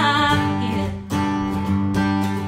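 Acoustic guitar strummed, with a woman's sung phrase trailing off at the very start. A new chord is struck about a second in and rings on.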